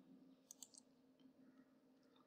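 Near silence: room tone, with a quick run of faint computer-mouse clicks about half a second in as the slideshow advances.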